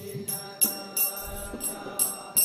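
Karatalas (small brass hand cymbals) striking in a steady beat about twice a second, each stroke ringing briefly, with a group of voices singing the kirtan's call-and-response line faintly behind.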